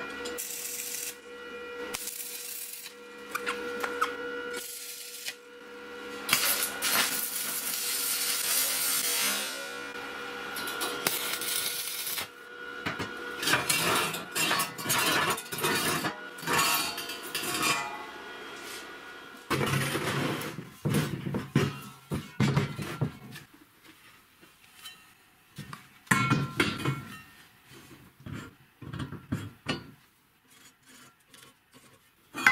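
Metalworking sounds on steel square tubing: a few seconds of a power tool working steel, then a run of short sharp clanks and knocks as steel parts are handled on a metal bench.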